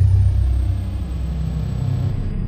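Studio logo-intro sound effect: a loud, deep, steady rumble that starts suddenly, with a faint thin high tone above it.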